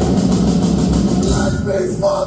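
Live metal band playing loudly through a club PA: distorted electric guitars, bass and a drum kit driving a fast, dense rhythm. The cymbals and high end drop away about a second and a half in, leaving guitars and bass.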